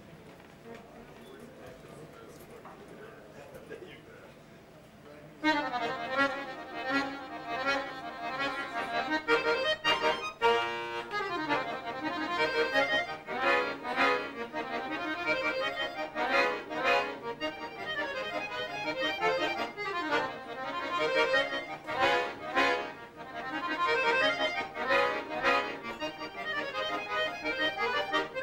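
Piano accordion playing a lively solo piece full of quick notes, coming in suddenly about five seconds in after a few seconds of low room sound.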